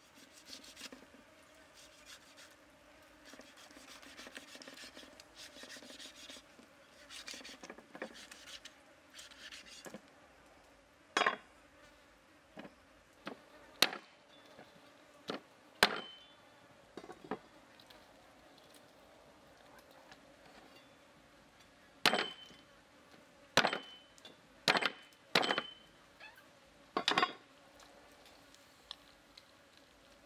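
A steel meat cleaver scraping over a raw cow's foot for the first several seconds. Then about a dozen sharp chops as the cleaver cuts through the foot into a round wooden chopping block, in two bursts, some with a brief metallic ring.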